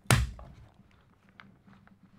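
A single sharp metallic snap of steel locking pliers clamping onto a steel drill bit stuck in a hammer drill's chuck, followed by a few faint small clicks from the pliers' jaws and the bit near the end.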